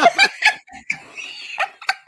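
Women laughing hard in a string of short bursts.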